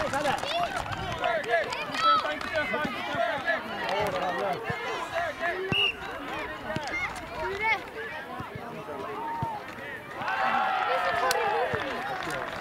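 Many voices of young footballers and spectators shouting and calling over one another across a football pitch, louder near the end, with a few sharp knocks.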